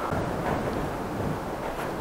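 Gale-force wind gusting outside, heard from indoors as a steady rushing noise that swells slightly.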